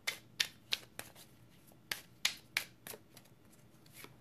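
Deck of angel oracle cards being shuffled by hand: a string of about ten sharp card slaps at uneven intervals, with a short pause partway through.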